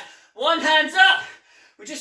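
Only speech: a man's voice saying one short phrase, a brief pause, then talking again near the end.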